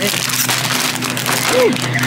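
Plastic grocery packaging rustling and crinkling as it is handled, over a steady low hum, with a brief voiced sound near the end.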